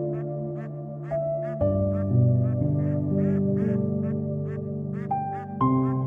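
Blue-and-yellow macaw giving a quick run of short, nasal squawking calls, about three a second, over steady background music.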